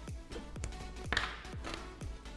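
Background music with a steady beat, about two beats a second, and a short scrape a little after a second in.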